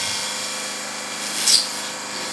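Bible pages rustling as they are turned, one short rustle about one and a half seconds in, over a steady background hiss.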